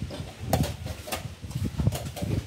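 Wooden chess pieces set down and a chess clock's button pressed in a fast blitz game: three sharp clicks, about two-thirds of a second apart.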